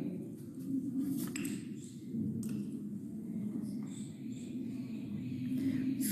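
Steady low room hum with a few faint clicks about a second in and again near two and a half seconds, as glass test tubes are handled in a rack.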